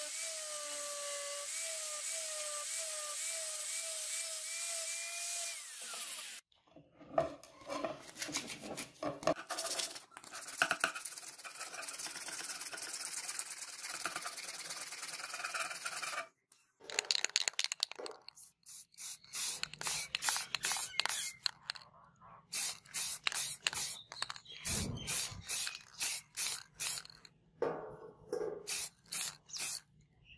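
Angle grinder grinding down the cast brass guard of a chopper, its whine wavering as the disc bites, for about six seconds before it stops suddenly. Hand rubbing follows, with a cloth polishing the handle and guard in repeated strokes, about two a second.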